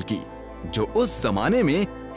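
Hindi narration over steady background music. The voice pauses for the first half second or so, then resumes.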